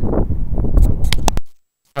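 Rumble of wind and handling on a handheld camera's microphone, with a few sharp clicks about a second in, then it cuts to dead silence.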